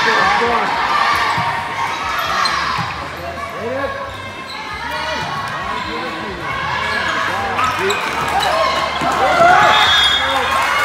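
Indoor volleyball rally: the ball is struck and bounced on a hard sport court, among voices of players and spectators calling out, echoing in a large hall.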